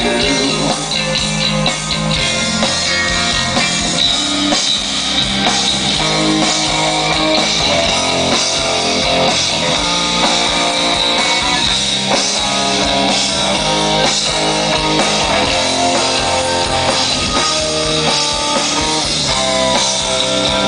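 Gothic metal band playing live: distorted electric guitars and drum kit in a loud, steady instrumental passage with no singing.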